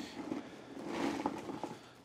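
Lumps of wet coal tipped out of a bucket onto a towel, landing with soft, irregular thuds and light knocks.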